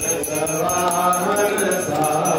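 Voices chanting a Hindu devotional hymn during aarti, with a quick, evenly repeating high jingle keeping time over the singing.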